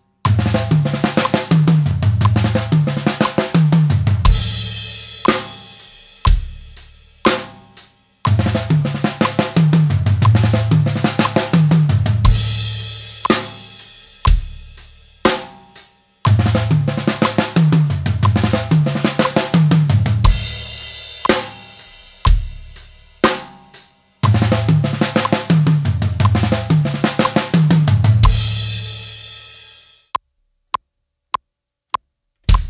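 Acoustic drum kit played at a slow tempo in a phrase that repeats about every eight seconds: a busy run of snare and tom strokes decorated with drags (two quick grace notes before an accented stroke), stepping down in pitch across the toms. Each run is followed by a few separate hits, with cymbals ringing out and dying away.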